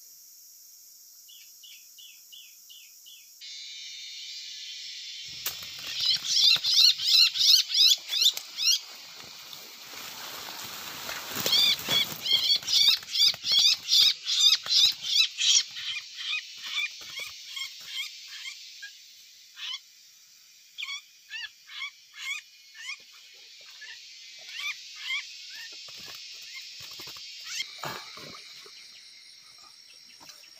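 A small bird caught in a bamboo bird trap calling shrilly and repeatedly, about three calls a second, in two loud bouts, then fainter, shorter chirps. Rustling of leaves and bamboo as the trap is handled, over a steady background of insects.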